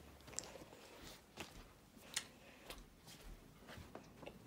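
Near silence with a few faint, scattered clicks and soft rustles close to the microphone.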